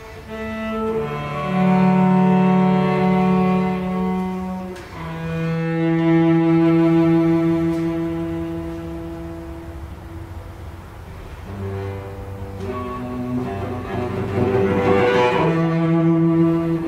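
Cello playing slow, long bowed notes, sometimes two at once. It grows softer in the middle and swells louder again near the end, in a contemporary classical trio for clarinet, cello and piano.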